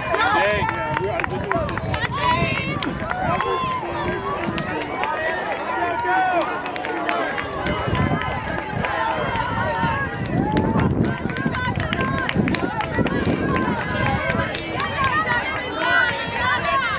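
Several voices of trackside spectators overlapping, calling out and talking at once.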